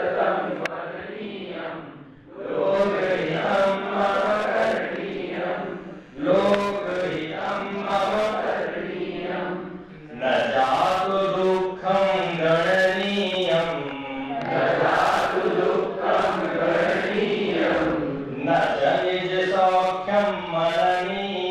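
A man's voice chanting Sanskrit verse into a microphone. The long, melodic phrases bend in pitch and are separated by short breaths every few seconds.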